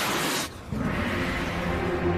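A short rushing blast of rocket-boot thrusters taking off, a cartoon sound effect, dying away about half a second in; background music with steady held notes follows.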